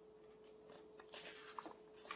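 Near silence with faint rustling of paper as the picture book's pages are handled, growing slightly about a second in, over a faint steady hum.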